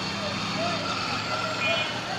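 Busy street traffic: a motor vehicle's engine runs with a steady low hum that stops shortly before the end, under the chatter of passers-by and a brief horn toot near the end.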